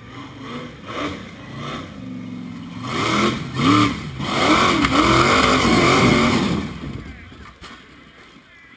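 Rock bouncer buggy's engine revving hard as it climbs a steep dirt hill, its pitch rising and falling in waves as the throttle is worked. It grows louder, is loudest from about three to six and a half seconds in, then fades away.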